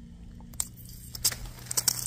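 Sharp clicks and crackles as plastic maple sap tubing is snipped with a hand tubing cutter and handled among dry leaves, the clicks coming thicker near the end, over a steady low hum.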